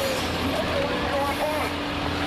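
Steady engine hum of idling emergency vehicles under an even rushing noise, with faint voices.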